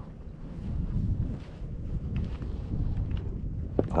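Wind buffeting the microphone, a rough low rumble, with a few faint ticks.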